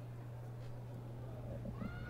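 Quiet ballpark background between pitches: a steady low electrical hum under faint, distant high-pitched calls, one rising slightly near the end.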